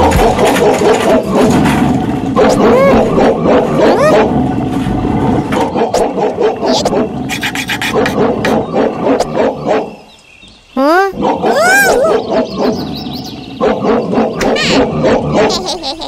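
Cartoon soundtrack of wordless clay-character voices, mumbles and exclamations without real words, mixed with comic sound effects. There is a brief lull about ten seconds in, then a swooping, wavering sound.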